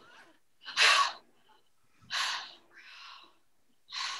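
A woman's short, forceful huffs of breath, three about a second apart with the first the loudest: effortful exhalations and gasps from straining hard, as when pulling with all her strength.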